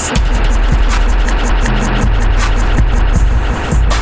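Harsh noise music built from looped and processed samples: a loud, dense wall of noise over a steady deep bass drone, with fast stuttering hiss in the high end.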